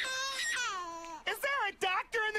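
A cartoon character's high-pitched whimpering in fright: one long falling whine, then short wavering whimpers.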